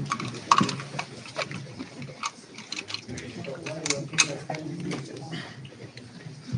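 Indistinct voices of several people talking in a room, mixed with scattered short clicks and knocks.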